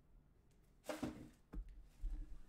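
Near silence: room tone, broken about a second in by one short, faint sound and a few light clicks near the end.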